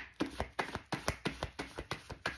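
A deck of tarot cards being shuffled by hand, the cards slapping together in quick, even strokes about four or five times a second.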